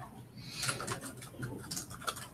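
Typing on laptop keyboards: quick, irregular key clicks, several a second.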